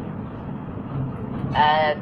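Steady background noise, then a person's voice holding a syllable from about one and a half seconds in.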